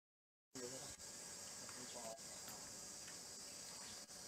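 Faint steady high-pitched drone of insects in outdoor background noise, starting about half a second in after a short dropout of sound, with faint distant voices.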